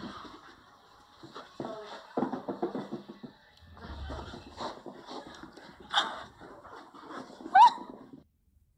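A small puppy giving high little cries, the loudest a short, sharply rising yelp near the end, with low mumbled voices.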